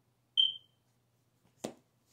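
A single short, high electronic beep, loud and dying away quickly, then a sharp knock about a second later.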